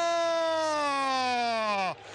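Male Arabic football commentator's long, drawn-out shout of "Allah!" held on one high note, a goal call. It slides down in pitch and breaks off just before the end.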